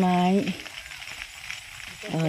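A woman's voice ends a word about half a second in, leaving a faint, steady, high hiss of outdoor background noise.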